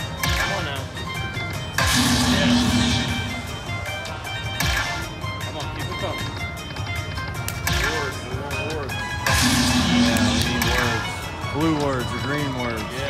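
Dragon Link slot machine playing its hold-and-spin bonus music, with about five sudden sound-effect hits as the reels respin and fireball coins lock onto the screen.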